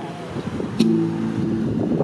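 Guitar chord strummed about a second in and left ringing, between sung lines. A minivan passes close by on the street.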